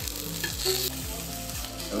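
A5 wagyu ribeye sizzling steadily on a tabletop Korean barbecue grill.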